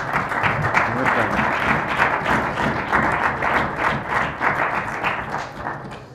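Legislators applauding a finished speech: dense clapping from many hands that tapers off shortly before the end.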